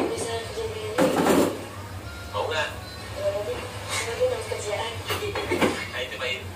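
Indistinct voices in the background over a steady low hum, with kitchen clatter from cooking: a short, loud noisy burst about a second in and a few sharp knocks of pans and utensils later on.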